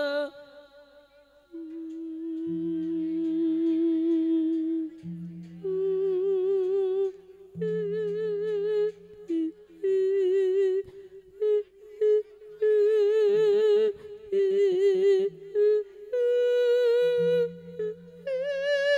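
A Thai monk singing a thet lae, the Isan sung Buddhist sermon, in long held notes with heavy vibrato. The phrases are split by short breaths, and the melody climbs higher after a few seconds and again near the end.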